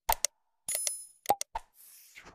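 Sound effects of a subscribe-button animation: two quick mouse clicks, a short bright bell ding, two more clicks, then a soft whoosh near the end.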